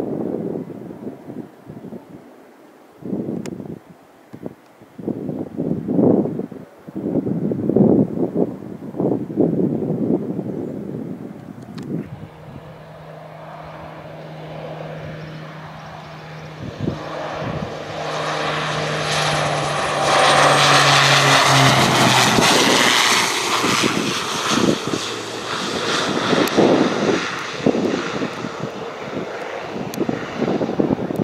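Wind buffeting the microphone, then a twin-engine turboprop airplane passing low on its landing approach. Its propeller hum builds to its loudest about two-thirds of the way through, with a high whine that falls in pitch as it goes by.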